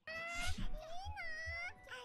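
A faint, high-pitched girl's voice from a subtitled anime, speaking in a sing-song way with one long drawn-out rising and falling note in the middle.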